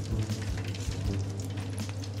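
Hot oil in a deep-fat fryer sizzling and crackling with a dense run of small ticks, over a steady low hum.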